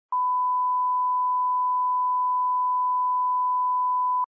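Video line-up test tone: one steady, pure beep at a single pitch, held unbroken. It is the reference tone laid with colour bars at the head of a tape.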